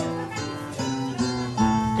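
Acoustic guitars playing a short plucked run of single notes, an instrumental break between sung verses of an Azorean cantoria.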